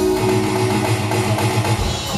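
Live band playing an instrumental groove: electric bass line, drum kit and hand percussion with keyboards, heard from the audience in a concert hall.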